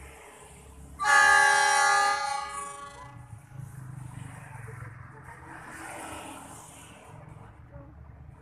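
A train's diesel locomotive horn sounds one loud blast of about a second and a half, starting about a second in and fading away. A low rumble follows.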